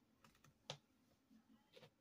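Near silence, broken by a few faint, sharp clicks, the clearest a little past a third of the way in, from handling a comb and hair-styling tools on a wig.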